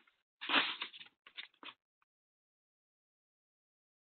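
Sheets of paper rustling and crackling as they are fan-folded and pressed flat by hand, in a few short bursts during the first two seconds.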